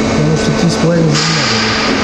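Indistinct talking in the background over a steady machine hum, with a hiss joining in about a second in.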